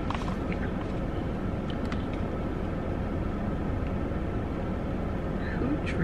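Steady low rumble inside a car's cabin, with a few faint small clicks about two seconds in.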